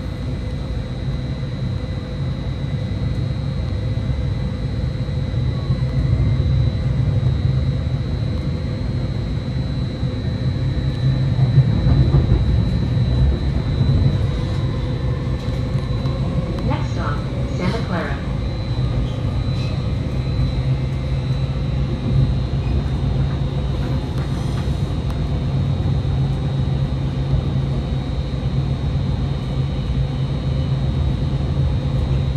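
Caltrain commuter train heard from inside a passenger car, pulling out of a station and picking up speed: a steady low rumble of wheels on the track that grows louder over the first several seconds, with a constant high thin whine over it.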